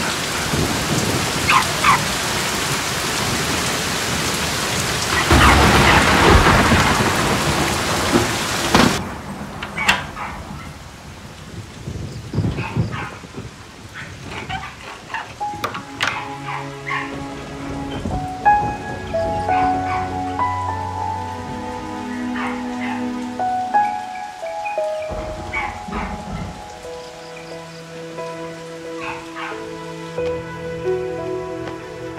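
Heavy rain with a loud thunderclap about five seconds in; the rain cuts off suddenly about nine seconds in. A sharp metal click of a door bolt being slid comes about halfway through, and soft music with held notes builds over the second half.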